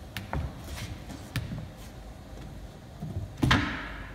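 Wooden knocks and clunks from handling a small organ's wooden case and a long wooden pole: a few light taps in the first second and a half, then one louder clunk near the end.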